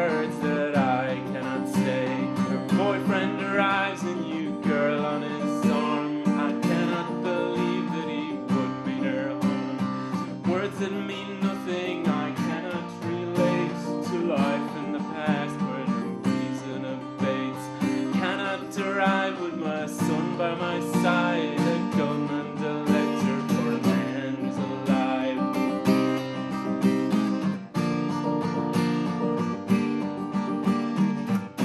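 Acoustic guitar played continuously in a steady, picked and strummed accompaniment.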